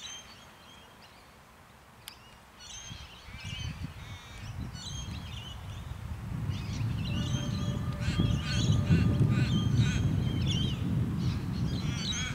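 Birds calling with short chirps and squawks. A low rumble builds from about three seconds in and is loudest in the second half, with a faint steady hum in the louder part. There is a single sharp click about two seconds in.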